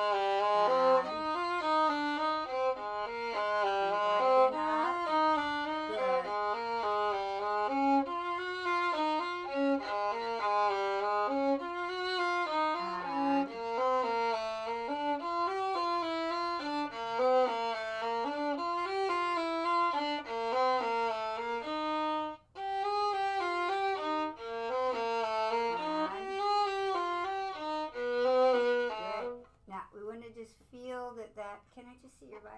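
A violin played solo in a steady run of quick bowed notes. There is one short break about three quarters of the way through, and the playing stops near the end.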